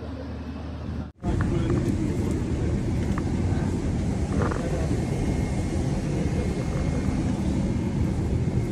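Steady low rumble of an airliner cabin, with faint voices of passengers in the background. The sound drops out for a moment about a second in, then comes back a little louder.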